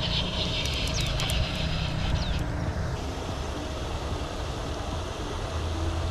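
Steady low rumble of wind buffeting the microphone. For the first two seconds or so, clothing rubs and scrapes close against the microphone.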